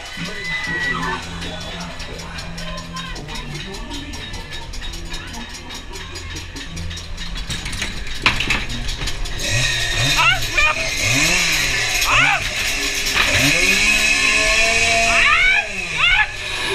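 Ghost train ride: a steady hum of the ride and its sound system for the first half, then a sharp bang about eight seconds in as the car pushes through the entrance doors. After it come loud spooky voice effects with swooping howls that rise and fall over and over.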